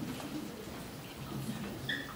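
Quiet, indistinct murmur of low voices in a hall.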